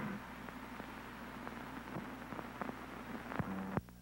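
Faint hiss and low hum from an old film soundtrack, with scattered crackles and a few sharper pops near the end.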